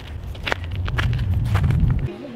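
Footsteps crunching on snow, several quick steps, over a low rumble that builds toward the end and cuts off suddenly.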